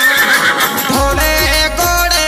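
DJ-remixed Rajasthani devotional song with a horse whinny sound effect mixed in, rising and then wavering for the first second or so. The bass beat drops out under the whinny and comes back in about a second in.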